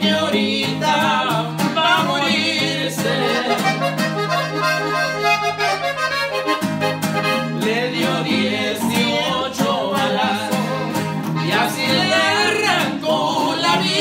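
Norteño corrido played live on a Gabbanelli button accordion and a strummed bajo sexto, with a man singing in Spanish over them. About four seconds in, the accordion holds a long low chord for a couple of seconds before the singing and strumming pick up again.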